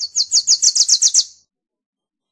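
Wilson's warbler singing: one rapid burst of about ten high, sharp chattering notes, each slurring downward, lasting just over a second.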